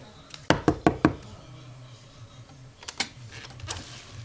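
Four quick knocks on a wooden door, then a few lighter clicks near the end.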